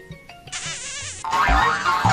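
Comedic film score: light, separate plucked-sounding notes, then a wavering, warbling sound effect about half a second in, giving way to louder, fuller music with sliding notes just after a second in.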